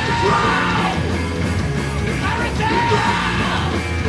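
A hardcore punk band playing live at full volume: distorted guitars, bass and drums, with the vocalist yelling over them.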